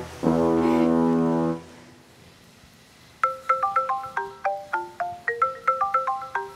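A short brass-like music sting holds one note for about a second and a half. After a pause of about a second and a half, a mobile phone starts ringing with a marimba-style ringtone: a quick, bright melody of struck notes, three or four a second, that keeps repeating.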